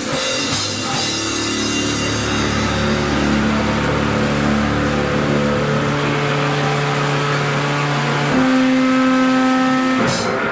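Live powerviolence band holding loud, distorted electric guitar and bass chords that ring out in a sustained drone, with the drums mostly stopped. About eight seconds in, the chord changes to new held notes.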